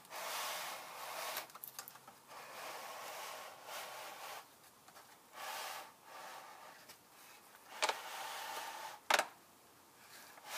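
Handling noise from the phone as it is moved: irregular bursts of rubbing and rustling close to the microphone, with two short sharp clicks near the end.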